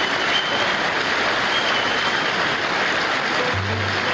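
Live Arabic orchestral music from an old 1968 concert recording, heard through a dense, steady wash of noise. A short low note sounds near the end.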